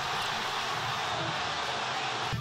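Football stadium crowd cheering a goal, a steady wash of many voices with no single voice standing out.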